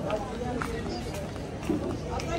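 Busy outdoor market ambience: indistinct voices of shoppers and stallholders talking, with footsteps and small scattered clicks and knocks over a steady background hum.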